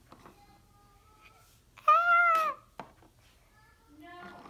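A single loud meow lasting about half a second, about two seconds in, followed shortly by a sharp click.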